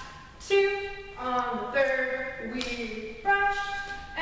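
A woman's voice singing held notes, a new syllable about every half second to second, keeping time for a ballet barre exercise with sung counts or a tune.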